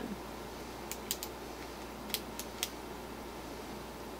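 Quiet, steady room hiss with two quick runs of three faint, sharp clicks, about a second apart.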